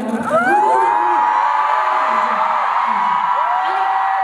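Concert audience screaming and cheering, many high voices in long cries that glide up and are held.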